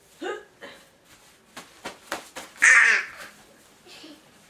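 A toddler's short vocal squeals and giggles as he is rolled about on a bed, with a few light knocks in between, and one loud, high squeal near the end.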